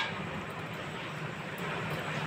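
Steady background hum with an even hiss, with no distinct knocks or clicks.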